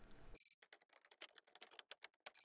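Faint title-card sound effect: a rapid, irregular run of short digital ticks like text being typed out, with a brief high electronic beep about half a second in.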